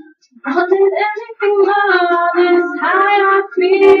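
A high voice singing a sung line, with a short break about half a second in before the next phrase.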